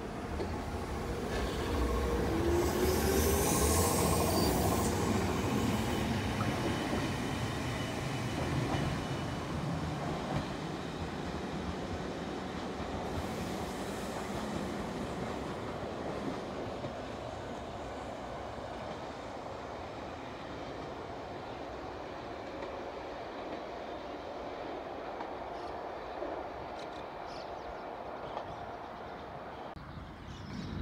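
Nagano Electric Railway 3500 series electric train (ex-Hibiya Line stock) pulling away from the platform: a rising whine as it gathers speed over the first few seconds, with rail and wheel noise, then fading steadily as it draws away down the line.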